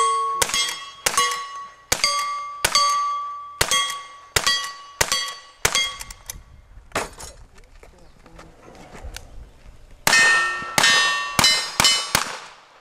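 Gunshots from a lever-action rifle fired in quick succession, each followed by the ring of a struck steel target, about one shot every 0.7 seconds. After a pause of a few seconds with small clicks, a faster string of revolver shots begins about ten seconds in, again with steel targets ringing.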